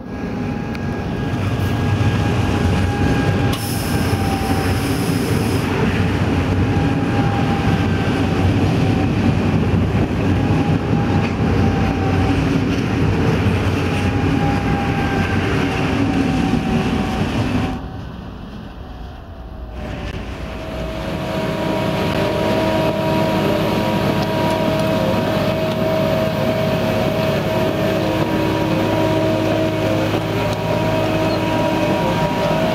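Pendolino electric train running past at speed for about the first 18 seconds, with the noise of wheels on rail and a faint gliding whine. After a brief drop, a track-laying machine's diesel engine takes over, running steadily.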